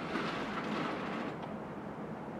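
Heavy drapes being pulled closed by hand along a curtain track: the runners slide along the rail and the fabric swishes in one pull of about a second and a half.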